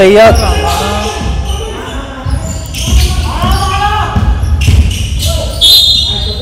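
Basketball dribbled on a hardwood gym floor, thudding in a large hall. Near the end a referee's whistle blows one steady high note, stopping play for a blocking foul.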